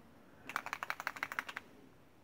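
Mixing beads rattling inside a small bottle of Distress Oxide reinker as it is shaken by hand to mix the ink: a quick run of about a dozen sharp clicks, about eleven a second, starting half a second in and lasting about a second.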